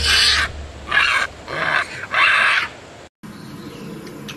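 Japanese macaque calling: four loud, sharp cries in quick succession, each under a second long, with the last and longest ending about two and a half seconds in.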